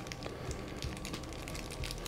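Faint crinkling of small plastic bags of brittle wax dye chips handled between the fingers, with a few light clicks.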